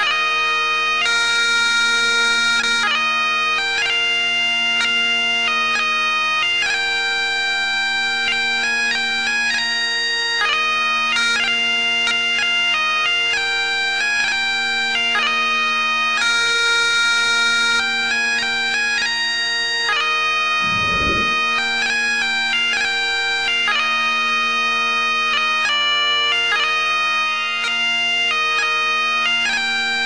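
Bagpipe music: a steady drone held under a quick, stepping chanter melody.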